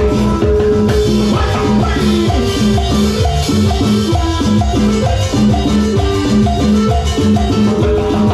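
Latin dance band playing an instrumental passage: drums and hand percussion keep a steady beat under a short melodic riff that repeats over and over.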